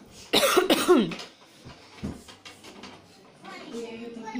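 A person coughs twice in quick succession, loud, starting about a third of a second in. Faint knocks from the toy tabletop football game's plastic rods and players follow.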